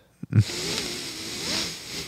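A man laughing quietly and breathily, mostly air with a faint wavering pitch, after a short voiced sound at the start.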